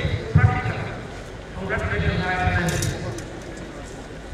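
A voice speaking in two short phrases with a pause between; the words cannot be made out.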